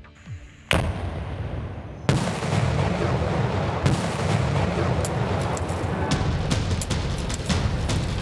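Controlled demolition explosions: a sharp blast under a second in and a second about two seconds in, then a sustained rumble peppered with sharp cracks.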